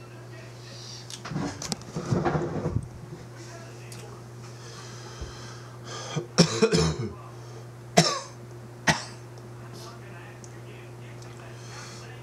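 A man coughing and clearing his throat in several bursts: a longer fit a second or so in, another around six seconds, then two short sharp coughs. A low steady hum runs underneath.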